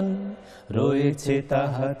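Men singing a Bengali Islamic devotional song (hamd) with no instruments to be seen. A held note ends, and after a brief gap a lower male voice starts the next phrase.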